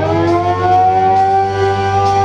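Live rock band music: the lead electric guitar bends a note up and holds it, sustaining over a steady bass line.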